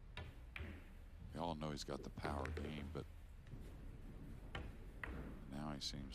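A few sharp clicks of pool balls, the cue tip striking the cue ball and balls knocking together, with a man's voice talking in between on the broadcast commentary.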